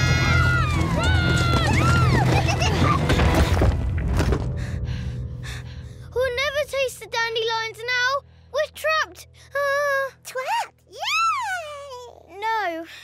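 Cartoon soundtrack: loud music over a rumbling crash that cuts off suddenly about four seconds in. After a short lull, the animated characters make short wordless vocal sounds, high grunts, hums and exclamations that bend sharply in pitch.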